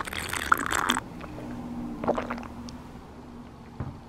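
A person drinking juice from a bottle: gulping and swallowing in the first second, then quieter mouth and lip sounds with a small click near the end.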